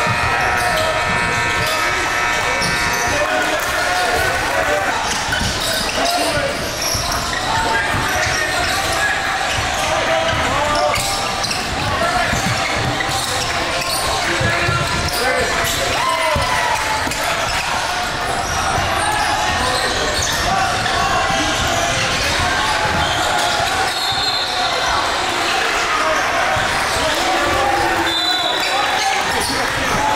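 Live game sound of a basketball being dribbled and bounced on a hardwood court, with many short thuds, under indistinct shouting and chatter from players and spectators, echoing in a large gym.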